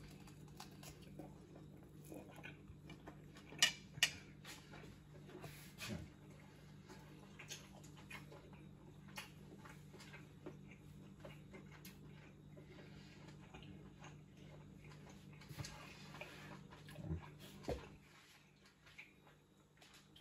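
Faint chewing of a bite of grilled ribeye steak, with a few sharp clicks about four and six seconds in, over a low steady hum.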